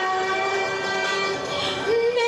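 A singer holding one long, steady note, then sliding up to a higher note just before the end.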